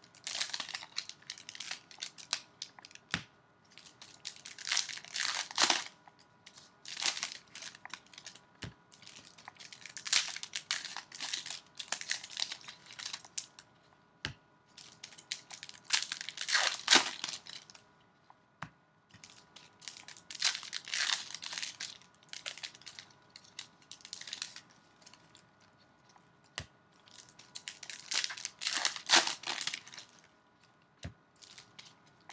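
Trading-card pack wrappers crinkling and tearing as packs are ripped open and the wrappers crumpled, in repeated bursts every couple of seconds, with a few sharp clicks between.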